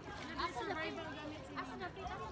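People chattering in the background, voices without clear words.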